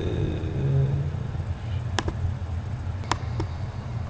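Computer mouse clicks: three sharp clicks about two seconds and three seconds in, over a steady low hum.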